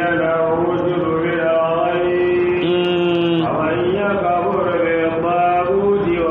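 A man's voice reciting Qur'anic verses in a slow melodic chant, drawing out long notes, one held steadily for about a second midway through.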